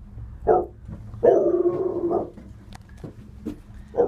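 A man imitating a dog: a short bark about half a second in, then a longer drawn-out dog-like cry lasting about a second.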